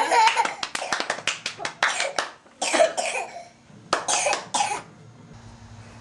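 Short, breathy vocal bursts from a person, coming quickly one after another for about two seconds, then in two shorter runs, stopping about five seconds in.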